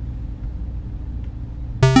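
Background synthesizer music: a low, steady drone, then a run of bright, sharp-edged synth notes starts suddenly near the end.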